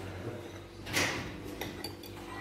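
A short soft rush of noise about a second in, then light clicks and a small clink of a porcelain coffee cup on its saucer near the end.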